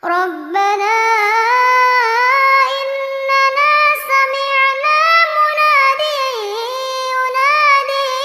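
A young female voice reciting the Quran in melodic tilawat style, drawing out long held notes with ornamented, sliding pitch.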